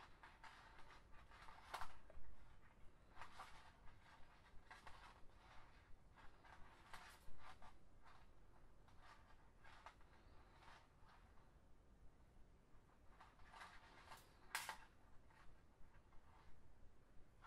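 Faint, irregular scratching and ticking of flat plastic lanyard strings being woven and pulled through by hand, a few slightly louder flicks among them.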